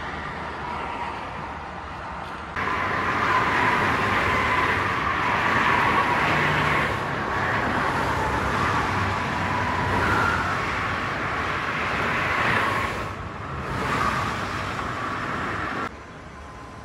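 Steady motorway traffic noise: cars running past on the concrete toll road, mostly the hiss of tyres. It gets suddenly louder about two and a half seconds in.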